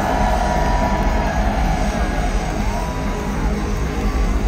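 Loud live heavy rock from the band, with dense low end and held notes that bend in pitch.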